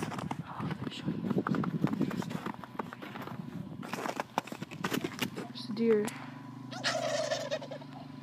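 Footsteps crunching across frozen snow and dry grass for the first five seconds or so. A low steady engine hum then sets in, and a short call from the wild turkey flock comes about seven seconds in.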